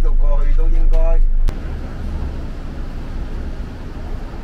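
A man talking over the steady low rumble inside a coach. About a second and a half in it cuts off abruptly to quieter, steady outdoor background noise.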